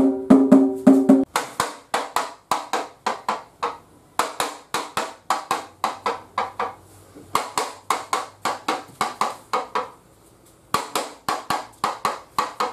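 Rhythmic percussion accompanying a stage performance: sharp, quick strikes at about four a second, played in phrases broken by short pauses. The first strikes carry a low, pitched ring.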